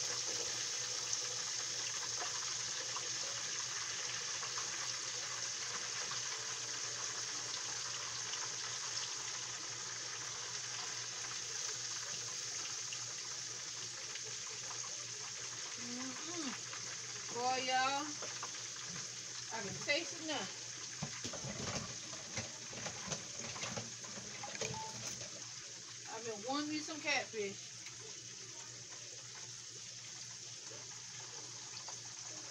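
Cornmeal-breaded catfish and green tomato slices frying in hot grease in two pans, a steady sizzle that eases a little over the half-minute. A person's voice is heard briefly a few times in the second half.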